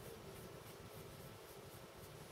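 Faint, quick scratching strokes of a small brush rubbing dry weathering pigment onto a plastic scale model, about three strokes a second, over a low steady room hum.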